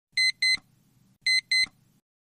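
Electronic beeps of a film-leader countdown effect: two pairs of short, high double beeps, one pair per count, about a second apart.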